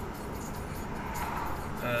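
Car cabin noise: a steady low rumble from the car's engine and the surrounding traffic while the car sits in traffic, with a soft swell of passing-traffic noise a little past the middle.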